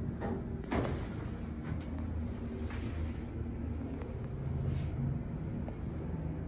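Elevator cab's double-speed sliding doors closing, meeting with a sharp thud just under a second in, then a steady low hum inside the cab with a few faint clicks.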